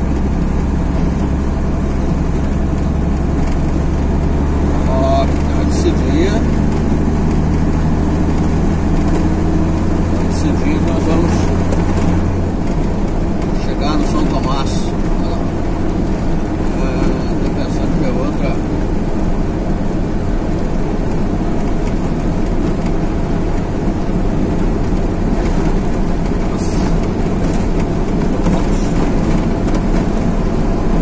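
Engine drone and tyre noise of a moving road vehicle, heard from inside the cab while it drives along an asphalt road. The low steady hum changes and drops about twelve seconds in.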